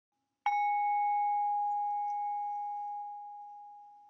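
A single bell-like chime, struck once about half a second in, one clear tone ringing and slowly fading away.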